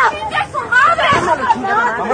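Several people's voices talking over one another: crowd chatter.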